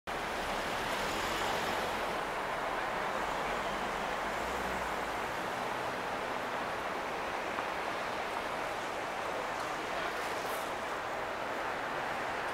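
Steady city street traffic noise: a constant wash of passing cars and tyres, with a low engine hum that fades out about five seconds in.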